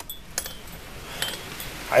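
A few light clicks and clinks from a storm door's latch and glass panel being handled, over a faint steady hiss of wind-driven rain.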